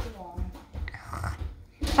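A voice making short wordless sounds, the first with a falling pitch at the start, then fainter ones.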